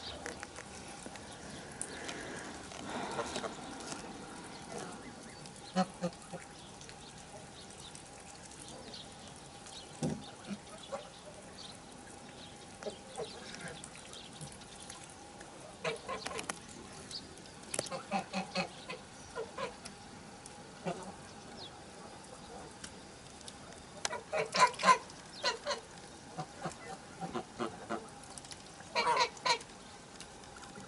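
Domestic geese honking now and then, a few calls at a time, with the loudest run of honks about three-quarters of the way through and another just before the end.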